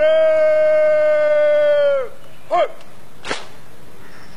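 A parade commander's drawn-out shouted drill command, one long call held for about two seconds that drops off at the end, followed by a short shouted word and, about a second later, a single sharp crack.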